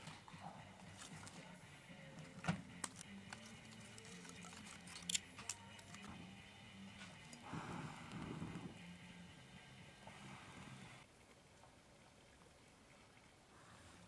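Faint sounds of someone trying to light paper-towel kindling by hand: a few sharp clicks, typical of a lighter being struck, and a brief rustle about halfway through, over a low steady hum that cuts off near the end. The kindling does not catch.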